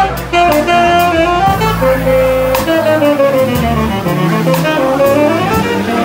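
Live jazz trio: a tenor saxophone plays a melody of held and sliding notes over electric bass and a drum kit, with the cymbal struck at a regular pulse.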